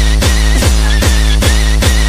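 Hardcore techno (gabber) track: a heavy distorted kick drum hits a steady beat a little over twice a second, each kick dropping in pitch, under a high wavering synth line.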